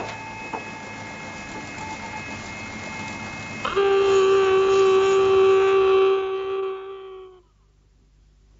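An electric site horn (hooter) mounted on a cabin wall sounds one long steady blast at a single pitch. It starts about four seconds in and cuts off after about three and a half seconds.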